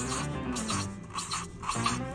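Background music, with a black marker scratching on paper in short strokes, about two a second, as small circles are drawn.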